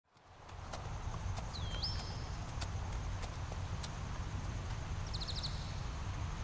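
Horse-barn ambience fading in: a steady low rumble, scattered knocks and a bird's chirps, one swooping whistle about a second and a half in and a quick trill near the end.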